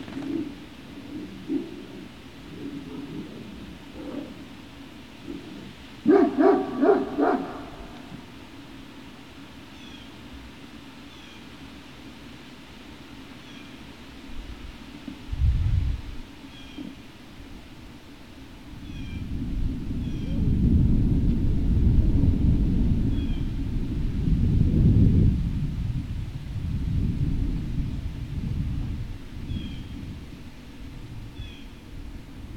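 A dog gives a quick run of about five short, high-pitched yips about six seconds in. Through most of the second half there is a long low rumble, the loudest sound, with faint high bird chirps over it.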